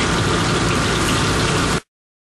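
Chicken pieces deep-frying in a wok of hot oil over a commercial gas wok burner: a steady sizzle of frying oil with the burner's low hum under it. The sound cuts off abruptly near the end.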